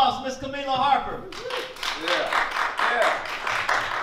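Audience clapping, starting about a second in, with voices heard over it.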